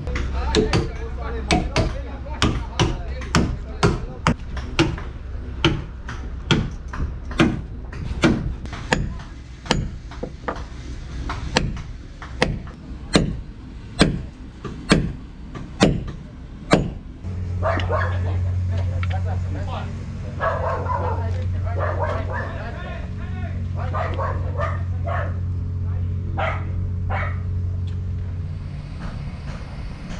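Quick, regular metal-on-metal hammering, about two blows a second, as long metal pins are driven up into the new transom timbers of a wooden boat. From about seventeen seconds in, the blows stop and a steady low machine hum takes over.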